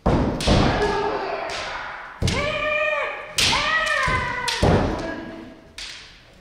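Naginata and kendo practitioners sparring: a series of sharp strikes and stamps on the wooden floor, several joined by long, loud kiai shouts that ring on in a large, reverberant wooden hall.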